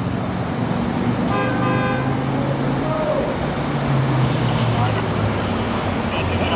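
Expressway traffic with vehicle engines running, and a vehicle horn sounding once for under a second about a second and a half in.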